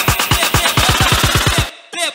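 Electronic dance music build-up: a kick-drum roll speeding up to about ten hits a second, then cutting off suddenly near the end.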